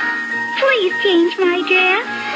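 Music with steady held notes, and from about half a second in a high, child-like voice speaking a short phrase, its pitch swooping up and down.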